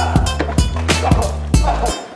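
Hip-hop beat with no vocals: steady drum hits over a deep, sustained bass line, with short gliding tones in the middle range.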